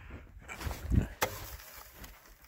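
A low thump and then a single sharp clack as a snow shovel is set down against an aluminium extension ladder, with some rustling handling noise.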